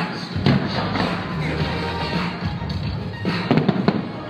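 Pyromusical soundtrack music playing, with fireworks going off over it: a thump about half a second in and a quick cluster of sharp bangs near the end.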